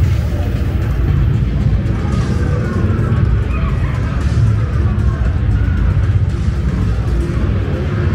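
Loud outdoor background music with a heavy, steady low rumble, mixed with the voices of passers-by.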